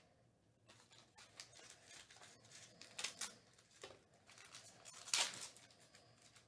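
Trading-card pack wrapper crinkling and cards rustling in the hands as a pack is opened and handled, in short scratchy bursts, the loudest about five seconds in.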